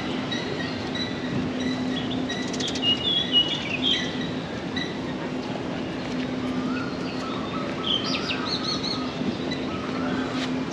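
Birds chirping and warbling in short bursts, about three seconds in and again near the end, over a steady low hum and a constant wash of distant city noise.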